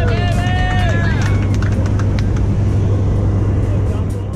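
Steady low drone of a skydiving jump plane's engine heard from inside the cabin, under a music track; a voice glides up and down over it in the first second or so.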